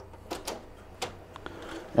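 A few scattered light clicks and knocks of plastic parts as a copier's dual-scan document feeder is handled, its cover held open and its green feed knob taken in hand.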